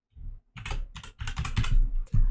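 A computer keyboard being typed on: a quick run of keystrokes starting about half a second in, as a short name is typed.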